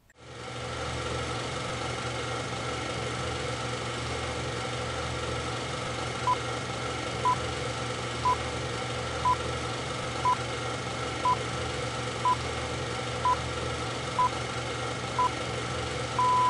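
Steady hiss and hum of an old film soundtrack, joined from about six seconds in by short high beeps exactly once a second, ten in all, like a film countdown leader.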